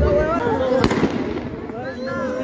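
A single sharp bang a little under a second in, heard over people's voices.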